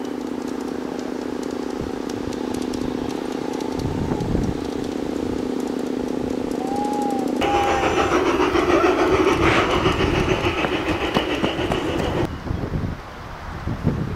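Garden-scale model train running on its outdoor track: a steady, multi-toned hum. About seven seconds in it gives way abruptly to a louder, rougher running sound, which stops suddenly about twelve seconds in.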